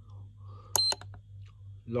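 Etronix Powerpal 3.0 LiPo charger giving a single short, high electronic beep with a click as a button is pressed to step through its menu, over a low steady hum.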